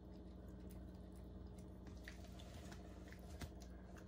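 Small dog chewing and smacking on a piece of cooked bacon, heard as faint scattered wet clicks over a steady low hum.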